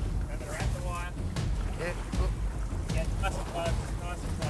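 Small fishing boat under way at sea: a steady low rumble of motor and wind, with a few short snatches of men's voices.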